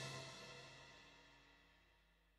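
The last faint tail of the final chord of a waltz played on a Yamaha PSR-SX900 arranger keyboard, with a cymbal ringing out, fading away about half a second in.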